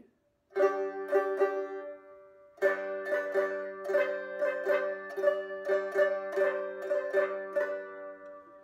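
Homemade cookie-tin stick dulcimer banjo being picked. A few notes about half a second in ring out and fade, then, from a little under three seconds in, a steady run of plucked notes, about four a second, over a steady drone. Bright and a little tinny.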